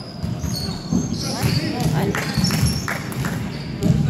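Basketball bouncing on a hardwood gym court, a run of sharp knocks from about a second in, echoing in the large hall, with voices in the background.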